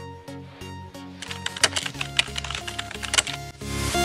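Background music with a quick run of keyboard-typing clicks laid over it as a sound effect; the music swells near the end.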